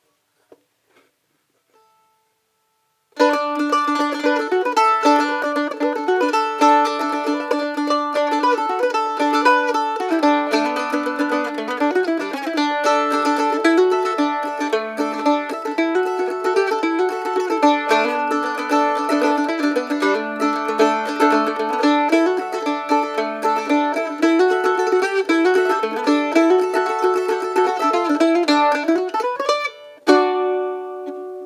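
Northfield A5 Special A-style mandolin played solo. A picked tune starts about three seconds in, after near silence with a few faint taps, and goes on without a break.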